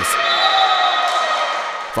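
Live sound of a volleyball match in an indoor sports hall: echoing hall noise with a held, slightly wavering pitched sound running through it.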